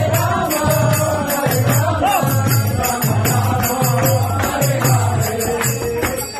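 Group devotional kirtan chanting with a double-headed mridanga drum keeping a steady beat, about one stroke every 0.7 s, and small hand cymbals (karatals) ringing continuously above the voices.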